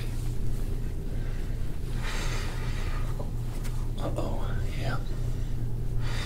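A gua sha scraping tool drawn over the skin of the back in a soft rasping stroke about two seconds in, over a steady low hum, with a quiet voice speaking around four seconds in.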